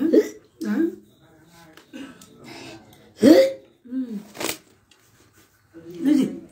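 A woman's short, hiccup-like vocal sounds, about seven of them, with pauses between; the loudest, about three seconds in, jumps up in pitch, and a sharper breathy one follows about a second later.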